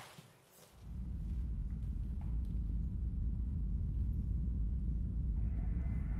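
A steady low rumble starts abruptly about a second in and holds, with a faint high steady tone joining near the end.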